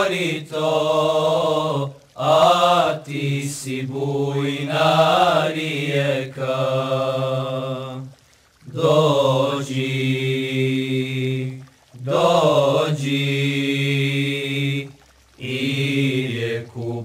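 Male voices singing a cappella in a slow Bosnian ilahija: long held vowels over a low sustained drone. The phrases break off for short breaths about every two to six seconds.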